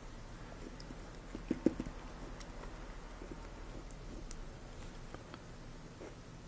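Faint scratches and ticks of a Zebra V-301 fountain pen's fine hooded nib making short strokes on paper, with a couple of sharper taps about a second and a half in. The nib is hard-starting and being coaxed to get the ink flowing.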